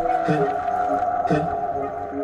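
Electronic dance music in a breakdown with no drum beat: a steady held synth tone under a short, gliding, voice-like synth figure that repeats about once a second.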